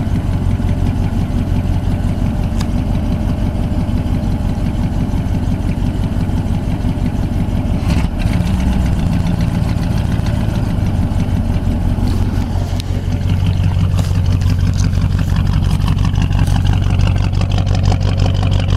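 1985 Oldsmobile Cutlass engine idling steadily shortly after a cold start in about 10-degree cold, with a brief change about eight seconds in and a little louder over the last few seconds.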